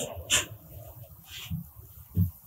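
A pause in a man's speech, filled with his own breathing: a quick breath about a third of a second in, then a few faint, short breath and throat sounds.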